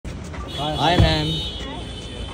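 A voice calling out over urban street noise, with a single brief knock about a second in.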